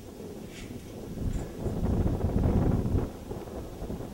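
Wind gusting across the microphone: a low, blustery noise that builds about a second in and eases near the end.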